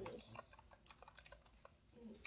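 Several faint, irregularly spaced key clicks from a wireless backlit computer keyboard being tapped.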